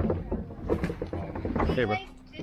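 Indistinct voices talking over a low wind rumble on the microphone.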